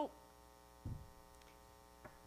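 Steady electrical mains hum with a short, soft low thump about a second in.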